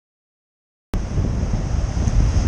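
Silence for about the first second, then wind on the microphone: a steady low rumble and rush that starts suddenly.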